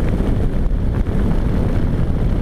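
Wind rumbling steadily on the microphone of a Suzuki V-Strom 650 at an easy cruise, with the bike's 645 cc V-twin engine running underneath.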